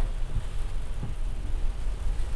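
Rain falling on a car's roof, heard from inside the cabin as a steady hiss over a low, continuous rumble.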